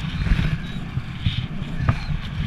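Wind rushing and buffeting over a helmet-mounted camera under an open parachute canopy, a constant low fluttering rumble, with a sharp click near the end.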